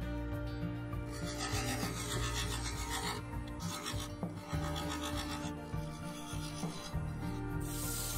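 A turning tool cutting into the base of a wooden bowl spinning on a lathe, a rough scraping noise that comes in stretches as the tool works the surface.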